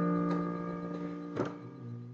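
Yamaha digital keyboard chord, struck just before, sustaining and slowly fading. A soft key click comes about one and a half seconds in, then a quiet low note near the end.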